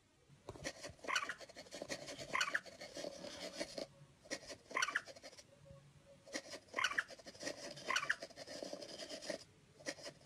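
Tablet cat game's mouse squeaking in short calls every second or two, with light taps and rubs of kitten paws on the touchscreen.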